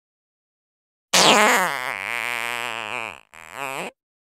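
A comic sound effect: a loud, low buzzing tone with a fast wobble slides in from high about a second in, sags slightly in pitch, and breaks off, followed by a shorter second note.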